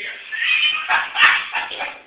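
A person's high-pitched vocal sounds, squeal-like, loudest in a sharp burst a little past a second in.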